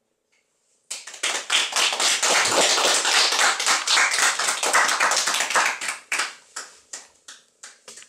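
A small group of people applauding by hand. The clapping starts suddenly about a second in, stays dense for several seconds, then thins out to a few scattered claps near the end.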